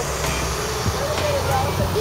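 Street traffic: a motor vehicle's engine running close by as a steady low rumble, with faint voices over it.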